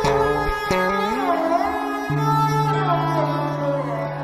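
Malayalam folk-song music. A melody with sliding notes plays over a steady low drone, with a few percussion strikes near the start.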